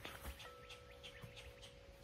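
Near quiet: faint, repeated short bird chirps over a faint steady hum.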